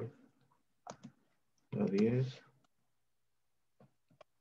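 A few short, faint clicks, a pair about a second in and more near the end, between brief fragments of speech on a video-call line.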